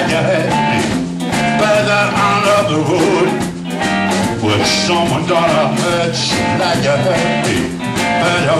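Blues-rock band playing live: electric guitar, electric bass and drum kit, with bending, wavering guitar lines over a steady beat.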